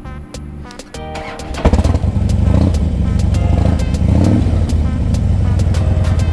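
Background music, then about one and a half seconds in a Harley-Davidson cruiser's V-twin engine starts with a sudden loud burst and keeps running at a steady idle under the music.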